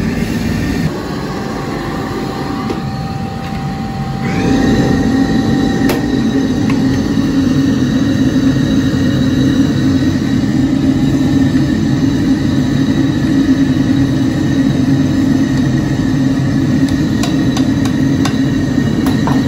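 Steady rumbling roar of a commercial gas stove burner firing under a pot, growing louder about four seconds in, with a faint steady whistle above the roar.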